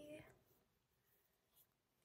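The tail of a woman's drawn-out, sung-like word fades out right at the start, then near silence: room tone.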